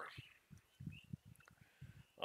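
Near silence: the beer pouring from a can into a glass mug is barely picked up, with only a few faint, short low knocks from handling the can and mug.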